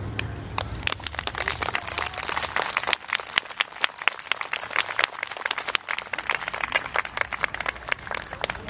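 Audience applauding: many hands clapping irregularly as the band's last chord dies away.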